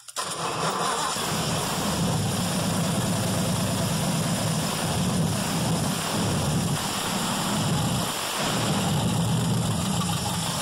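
V8 engine of a 1938 Ford Club Coupe hot rod running with its throttle worked by hand at the carburetor linkage. The revs rise and fall a little, with a brief dip about eight seconds in.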